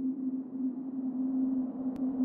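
A steady musical drone held on a single low pitch, around middle C. A faint brief click near the end.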